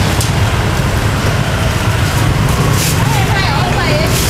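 Steady low rumble of street traffic, with people talking nearby, mostly near the end, and a few brief sharp clicks.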